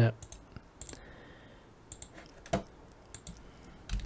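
A few scattered clicks from a computer mouse and keyboard, short and sharp, with the strongest about two and a half seconds in and another near the end.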